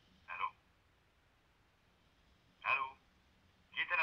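A man's voice coming thinly through a telephone earpiece, speaking three short words with pauses between, the last a quick pair near the end.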